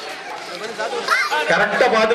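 Several people talking at once: a man's voice over mixed chatter.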